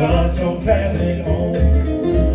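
Live bluegrass band playing: mandolin, upright bass and acoustic guitar, with a man singing over them. The bass sounds a series of plucked low notes under the strummed guitar and mandolin.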